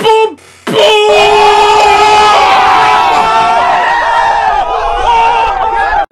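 Loud screaming: a short shout, then about a second in a long, wavering scream held for several seconds.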